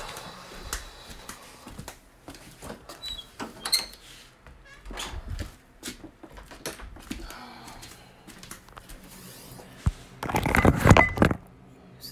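Handling noise from a phone being carried and moved: scattered knocks, clicks and rustles, with a loud stretch of rubbing against the microphone near the end.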